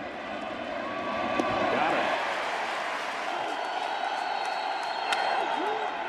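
Large ballpark crowd cheering, swelling about a second in and holding steady as a ground ball is fielded for an out.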